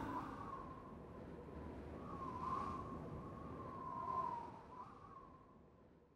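Quiet gap between songs. The music fades out at the start into a faint low hum with a faint, wavering high tone, then drops to silence shortly before the end.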